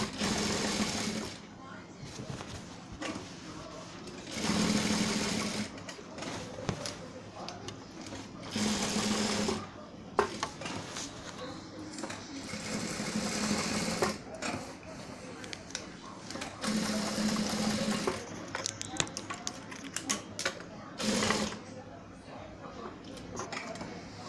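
Industrial sewing machine stitching through a thick shaggy fabric rug. It runs in short bursts, about six runs of one to two seconds each, with pauses between them as the rug is turned.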